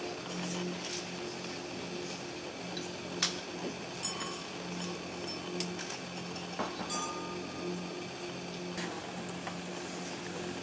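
Glasses clinking now and then as champagne is poured from magnum bottles into rows of glasses: a handful of sharp clinks, two of them ringing briefly, over a steady low hum.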